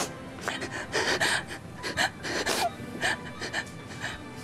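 A woman sobbing, catching her breath in a series of short gasping sobs.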